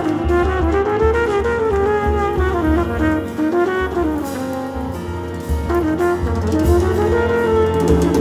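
Live jazz quartet: a brass horn plays a flowing melody that moves up and down over double bass notes, piano and drum kit, with cymbals more audible near the end.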